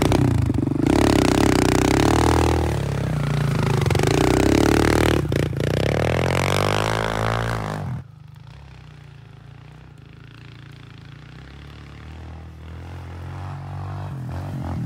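Kawasaki KLX pit bike's single-cylinder four-stroke engine revving up and down close by, with a couple of sharp clicks about five seconds in. About eight seconds in the sound drops suddenly to a much fainter running engine that grows steadily louder as the bike comes closer.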